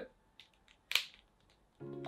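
A collectible figurine being handled, its joints moved by hand: mostly near silence with a few faint ticks, and one short, sharp click about a second in.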